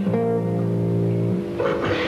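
Ten-string classical guitar (decacorde) playing a plucked chord that rings on; a noisy, rustling sound comes in over the held notes about one and a half seconds in.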